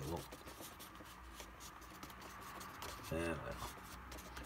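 Faint, scratchy strokes of a painting tool on watercolour paper as paint is worked in.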